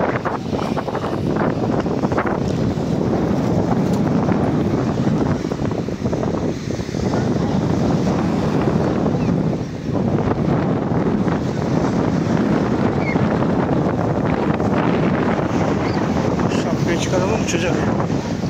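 Wind on the microphone: a steady, loud low noise, with brief dips.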